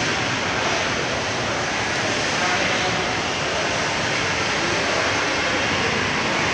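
Steady indoor shopping-mall background noise, an even hubbub with faint distant voices.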